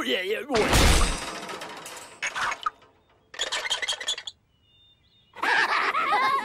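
Cartoon sound effect of something shattering: a loud crash about a second in, followed by two shorter clattering bursts of breaking pieces. Cartoon voices are heard briefly at the start and again near the end.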